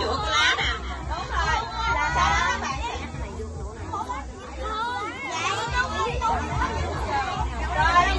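Many children's voices talking and calling over one another, a general chatter with no clear words, dropping briefly a little after the middle.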